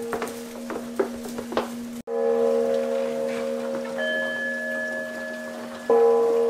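Buddhist temple bowl bells ringing with long, steady, overlapping tones that echo through the halls, struck again near the end, as part of a sutra-chanting service. A few light knocks sound in the first two seconds.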